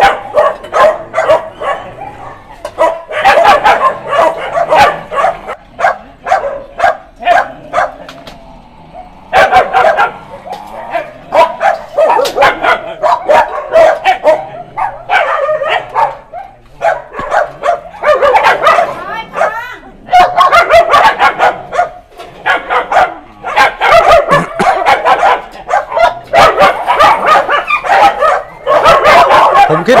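Many dogs barking and yipping over one another almost without a break, a pack eager to be fed as food is dished into bowls.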